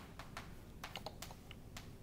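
Chalk writing on a blackboard: a faint run of irregular taps and short scratches as letters are chalked in.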